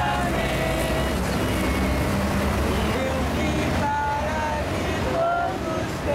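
Steady highway traffic rumble with people's voices over it.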